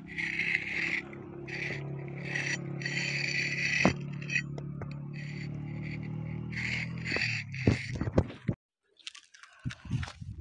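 A metal spade blade scraping across a soft rock face in a series of short strokes, about seven of them, over a steady low hum. There is a sharp click about four seconds in, and another click near the end before the sound cuts out briefly.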